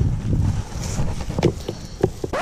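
Wind buffeting the camera microphone, a steady low rumble, with a couple of short rustles or knocks from handled plant stems about one and a half seconds in and near the end.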